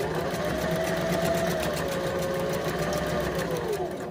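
Electric domestic sewing machine stitching a seam at a steady speed: a constant motor whine with a rapid, even needle clatter. Its pitch drops near the end as the machine slows.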